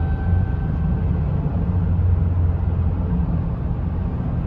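Cabin noise of a 2011 Chevrolet Traverse cruising at about 60 mph: a steady low drone of road and running noise, with no knocks or ticks from the engine.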